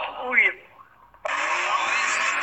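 A short shout over noise, then, after a brief pause, the steady loud roar of a drifting car's engine and spinning tyres.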